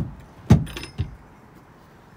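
Stainless steel retractable ski pylon being pulled up and seated in its deck socket: a metal clunk at the start, another about half a second in with a faint ring, and a lighter clink about a second in.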